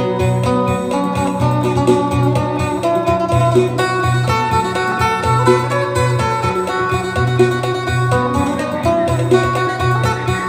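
Isan phin (Thai three-string lute) plucked in fast phin sing style: a quick, busy melody of picked notes over a repeating low bass.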